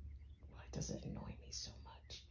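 A woman whispering indistinctly, starting about half a second in and lasting just over a second.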